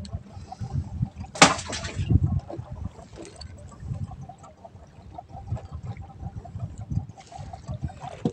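Sea water lapping and slapping against the hull of a small boat in irregular low thuds. There is one short, sharp sound about a second and a half in.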